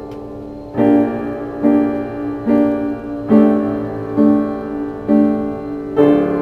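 Piano playing a slow original piece: a held chord dies away, then from just under a second in, chords are struck about once a second, each left to ring.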